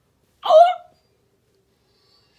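A person's brief, loud wordless vocal cry about half a second in, a short pitched sound with no words in it.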